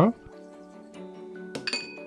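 Light background music, with one short ringing clink of kitchenware at the saucepan about one and a half seconds in.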